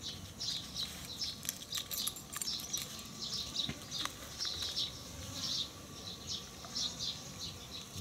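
Small birds chirping in short, repeated bursts with insects buzzing behind, and a few faint clicks.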